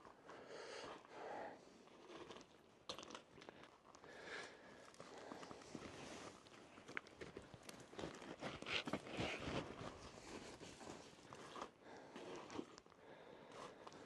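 Faint footsteps crunching on loose rock and rubble, with scattered small scrapes and clicks of stones underfoot.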